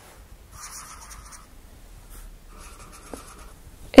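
Writing or drawing on a board: two scratching strokes, each just under a second long, one about half a second in and one about two and a half seconds in.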